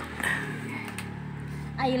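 A steady low hum with faint background voices, and a voice speaking near the end.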